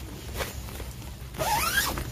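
A zipper pulled once in a short stroke of about half a second, near the end, after a small click about half a second in.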